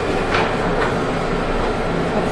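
Office photocopier running a copy cycle after start is pressed: a steady mechanical whir with a couple of faint clicks in the first second.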